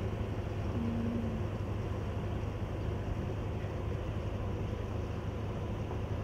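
Steady low rumble of outdoor background noise, with a short faint hum about a second in.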